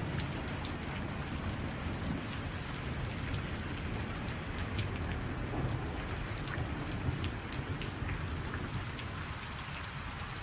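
Steady rain with many distinct drops, over a constant low rumble like distant thunder: a stormy-night soundscape.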